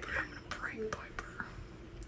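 Quiet whispering and low voices, with a couple of small clicks.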